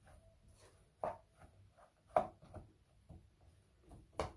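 Wooden spatula stirring and scraping a chopped onion, pepper and suet filling around a frying pan: irregular soft scrapes, with two sharper knocks about a second in and just after two seconds.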